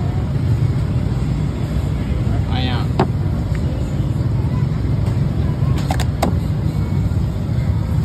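Steady low rumble of road traffic, with a few sharp clicks about three seconds in and twice near six seconds.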